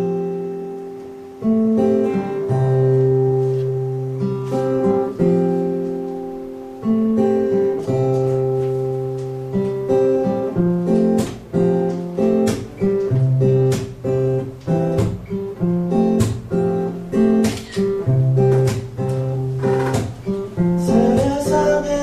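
Acoustic guitar playing a song's introduction: slow chords left to ring out at first, then a quicker picked pattern from about ten seconds in. A voice comes in near the end.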